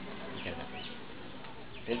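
Insects buzzing steadily with a couple of short high chirps; a man's voice comes in at the very end.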